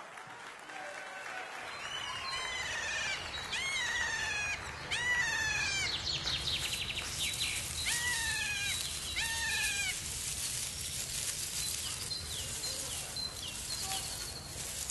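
An animal calling repeatedly: about five short cries that each rise and then fall in pitch, over a steady low rumble.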